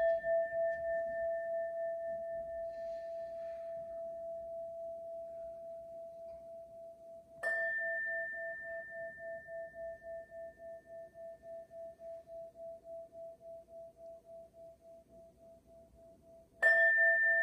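A small handheld singing bowl ringing with a slow pulsing wobble as it dies away, struck once more about halfway through and left to ring out.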